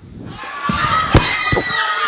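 Crowd noise swelling up in a hall, with three sharp thuds; the loudest is about a second in.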